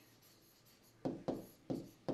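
Pen writing on a board: a quiet second, then three short strokes of the pen tip across the surface.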